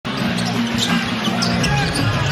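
Basketball being dribbled on a hardwood arena court, over a steady low hum of arena music and crowd.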